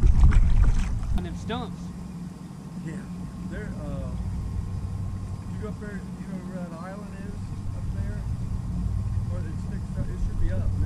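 Steady low hum of a bass boat's motor on the water, with wind buffeting the microphone in the first second or so and faint voices.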